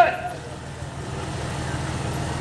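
A pause in a man's microphone-amplified speech: his last word trails off with a short echo just at the start, leaving a steady low hum of background noise.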